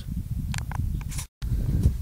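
Low rumble with a few light clicks and rustles from a handheld camera being moved, cut by a brief dropout to total silence about a second and a half in where the recording is edited.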